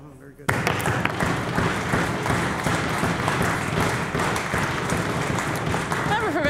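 A chamber of legislators clapping and thumping their desks in applause, with voices calling out through it. It starts suddenly about half a second in.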